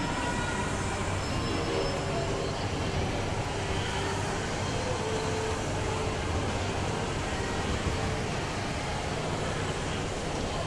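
Steady indoor shopping-mall ambience: an even low rumble of air handling and crowd noise, with faint distant tones drifting in and out.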